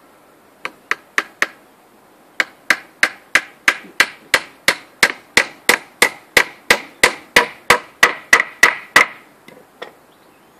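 Hammer blows on wood: four quick strikes, a short pause, then a steady run of about twenty strikes, roughly three a second.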